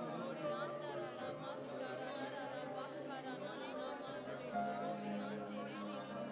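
Many voices praying aloud at once, overlapping in a steady murmur over held music chords that fade and return about four and a half seconds in.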